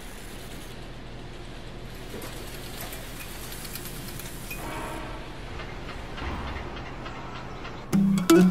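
A steady low rumble with a faint rhythmic clatter running through it, growing slightly louder toward the end.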